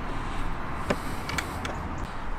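Steady outdoor background noise, with a sharp click about a second in and a few lighter clicks after it, as the under-seat storage cupboard door in the back of the camper van is shut.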